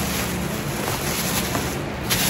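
Thin plastic grocery bag crinkling and rustling as it is worked over and tucked around a small plastic lid.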